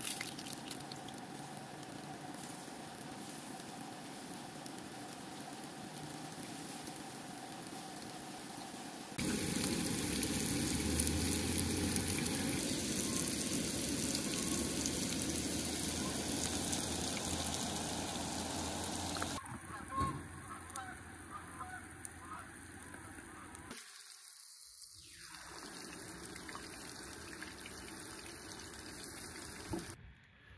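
Breaded steelhead chunks frying in oil in a skillet on a propane camp stove: a steady sizzle that gets louder about nine seconds in and drops back about twenty seconds in.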